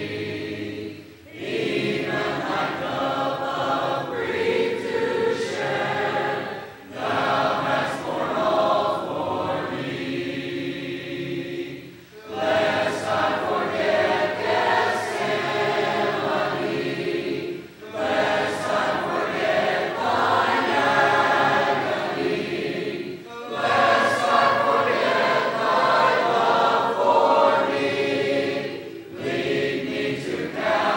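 A choir singing a hymn a cappella, in phrases of about five or six seconds with short pauses for breath between them.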